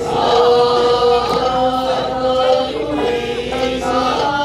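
Okinawan eisa song sung by several voices together over a PA, in long held notes that slide between pitches.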